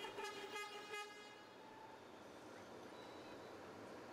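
A vehicle horn sounds for about a second at the start, over faint background noise.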